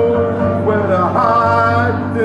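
A man singing live to his own electronic keyboard accompaniment: long held vocal notes over a steady low bass note.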